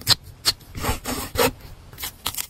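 A pointed metal-tipped hand tool scratching and rubbing over wide PET tape laid on a paper journal page: a handful of short rasping strokes in quick succession, one longer drawn stroke in the middle.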